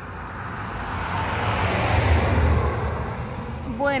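A car driving past close by on the highway: its engine and tyre noise swells to a peak about two seconds in, then fades away.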